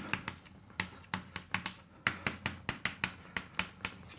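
Chalk writing on a chalkboard: a quick, uneven run of sharp taps and short scrapes, about four or five a second, as letters are written.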